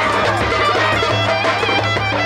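Street band playing traditional folk dance music: a clarinet carries a wavering, ornamented melody over a large double-headed bass drum beaten with a stick and a small hand drum.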